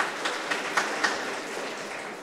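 Audience applause, a haze of many individual claps that starts to die away near the end.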